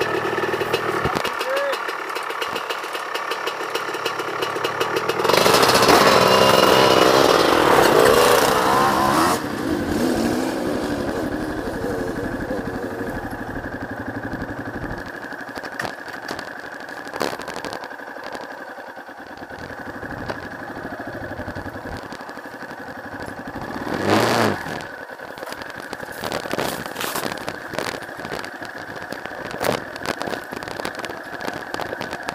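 Yamaha XT250's single-cylinder engine running steadily as the bike moves off along a dirt trail. The sound gets louder and busier for a few seconds about five seconds in, and there is a short loud burst about 24 seconds in.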